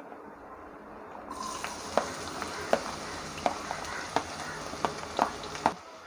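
Chopped shallots sizzling in hot oil in a nonstick pan, with scattered pops and crackles. The sizzle starts about a second in and stops abruptly near the end.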